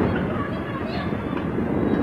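A house fire burning after an explosion, heard from a distance as a steady rumbling rush of noise with faint voices.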